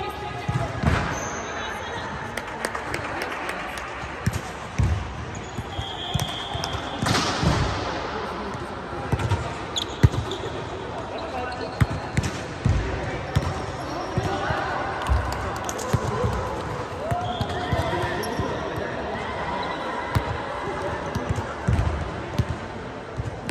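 Volleyball rally on an indoor court in a large echoing hall. The ball is struck and thuds at irregular intervals, sneakers squeak now and then, and players' voices call in the background.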